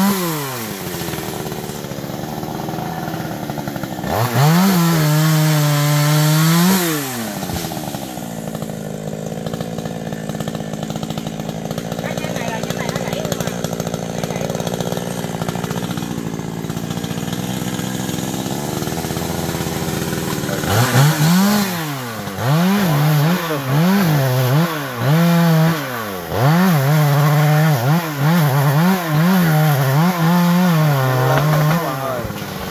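Chainsaw engine revved up briefly twice, then idling steadily for about twelve seconds, then revved again and again in short bursts from about twenty seconds in.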